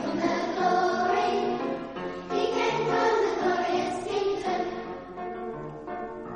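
A children's school choir singing, with long held notes. The singing grows quieter about five seconds in.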